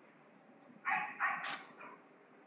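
Three short, high animal calls in quick succession about a second in, over faint room noise.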